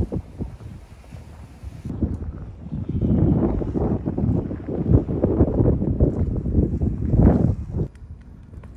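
Wind buffeting a smartphone's built-in microphone with no windscreen, an uneven low rumble in gusts that grow louder about three seconds in and stop abruptly at the end.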